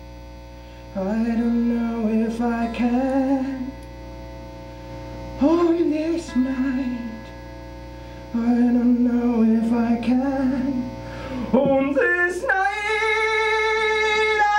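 A man singing wordless, drawn-out phrases in a low voice while playing a twelve-string acoustic guitar, three phrases with short gaps between them. About twelve seconds in, his voice jumps to a louder, long, high, wavering note. A steady electrical mains hum runs underneath.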